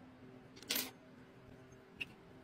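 A brief scrape of small metal airbrush parts being handled, a little over half a second in, followed by a light click at the very end.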